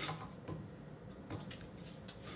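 A few light clicks of small steel tools, fly-tying scissors, being handled at the vise: one at the start, one about half a second in and one a little past halfway, over quiet room tone.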